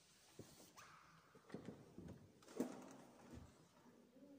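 Faint footsteps and rustling of a person walking away across the church, with a sharper knock about two and a half seconds in.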